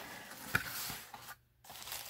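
Cardboard mailer box being opened by hand: a soft rustle and scrape of the flap and paper, with a small click about half a second in, then a brief silence before faint rustling resumes.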